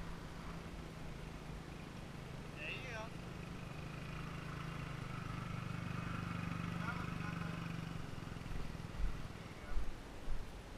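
Motorbike engine running steadily at low revs, its hum swelling a little before it fades about eight seconds in. A few heavy low thumps follow near the end as the bike moves down the bumpy dirt track.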